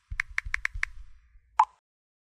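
Keyboard typing sound effect: about five quick key clicks in the first second. About a second and a half in comes a single short, louder pop, the message-sent sound of a chat app.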